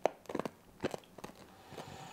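Hard candy being bitten and crunched between the teeth, a handful of sharp crunches in the first second and a half.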